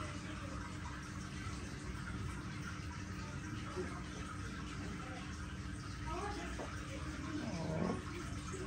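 Steady low room hum with a faint constant tone. Faint voice sounds come near the end.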